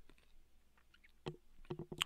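Near silence: room tone, then a few faint short clicks in the last second.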